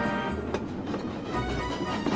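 A train running along the track, a rumbling, clattering noise, while background music fades out.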